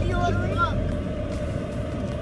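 Steady low rumble of a car running, heard from inside the cabin, with faint voices near the start.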